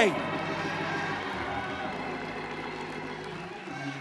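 A shouted word dies away in a large hall, leaving soft sustained keyboard chords and scattered congregation voices that slowly fade.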